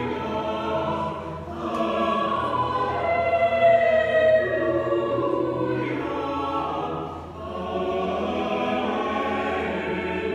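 Church choir singing a slow piece in long held phrases, with brief dips between phrases just over a second in and about seven seconds in.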